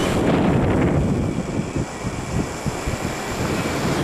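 Wind buffeting the camcorder's microphone in a gusty, uneven low rumble, with the wash of surf behind it.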